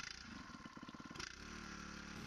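Power-assisted cable puller's motor running faintly, with a rapid even pulsing at first that settles into a steadier hum about a second and a half in.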